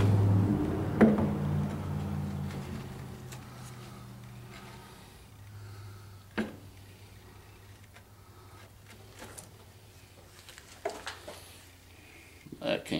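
NP208 transfer case being shifted into place against the transmission, giving a sharp metal knock about a second in and another about six seconds in, with a few light clicks near the end. Under them a low hum fades over the first few seconds.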